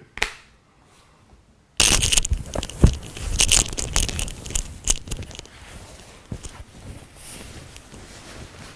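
Shirt fabric rustling and crackling loudly as a long-sleeve cotton shirt is pulled off over the head, with many sharp rubbing clicks. It starts suddenly about two seconds in, after a near-silent pause, and thins out over the last few seconds.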